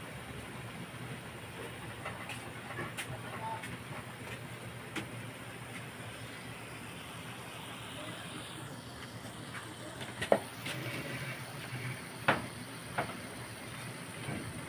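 Squid cooking in its juices in an aluminium wok: a steady sizzling hiss with sharp pops now and then, the loudest about ten seconds in.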